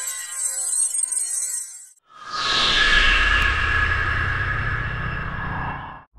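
Intro music and sound effects: a high, glittering chime-like shimmer for the first two seconds, then, after a brief gap, a swelling whoosh with a falling sweep over a low rumble that fades near the end.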